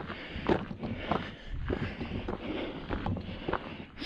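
Footsteps on a gravel track at a steady walking pace.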